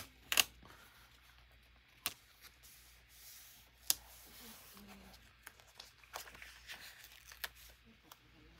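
A paper sticker being pressed and rubbed down by hand onto a journal page: soft rubbing and rustling of paper, broken by a few sharp clicks, three of them clear in the first four seconds, with smaller ticks later.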